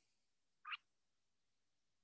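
Near silence, broken once by a single short sound a little before the one-second mark.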